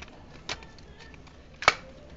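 A few handling clicks on the Dyson Cinetic Big Ball vacuum's wand as it is taken hold of. One moderate click comes about half a second in, and a sharp, louder click about a second and a half in.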